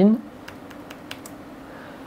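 Laptop keyboard being typed on: a handful of light key clicks in the first second or so, as a PIN code is keyed in.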